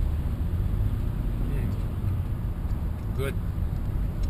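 Steady road and engine noise inside a moving car's cabin, a low rumble that does not change.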